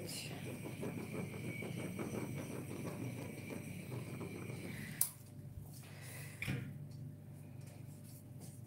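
Small handheld butane torch burning with a faint steady hiss as it is passed over wet poured acrylic to pop air bubbles. It shuts off with a click about five seconds in, and a soft knock follows a little later.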